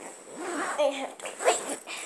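Fabric rustling, as of a sleeping bag being handled, with a few short high-pitched vocal sounds about a second in.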